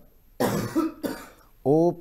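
A man gives one short cough in a pause, and about a second later starts talking again.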